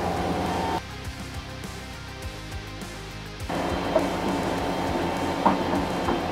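Background music with a steady beat; about a second in it thins to mostly the low beat, and it fills out again a little past halfway.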